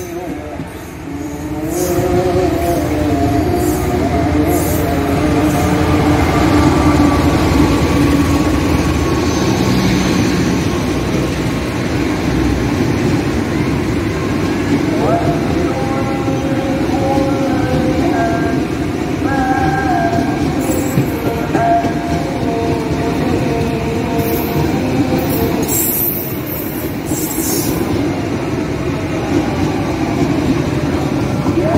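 Diesel-hauled passenger train passing close by, a steady loud rumble of locomotive and coach wheels on the rails that swells about two seconds in, with pitched tones wavering over the noise.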